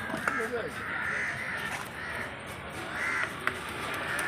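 Crows cawing repeatedly, with a couple of sharp knocks of a cleaver striking a wooden chopping block.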